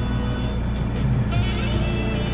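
Car radio playing music in the car's cabin over a steady low rumble from the engine and road.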